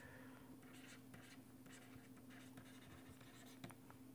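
Faint scratching and tapping of a stylus writing on a tablet screen, over a low steady hum.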